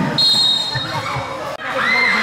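A referee's whistle blows one short steady note about a quarter second in, followed by crowd noise with shouting. The sound drops out for an instant near the end, then a shout rising in pitch.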